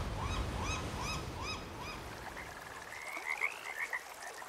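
Pacific tree frogs calling in a rapid series of short croaks, about four a second, that fade out about two seconds in; a higher, rising run of notes follows near the end.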